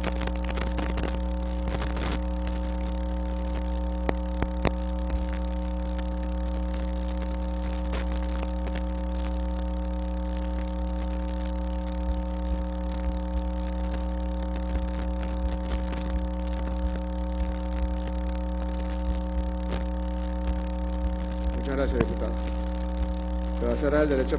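Steady low electrical hum with a stack of higher buzzing overtones, typical of mains hum picked up on an open microphone line, with a few faint clicks.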